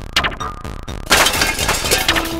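A loud crash sound effect about a second in, lasting nearly a second, over background music with a beat.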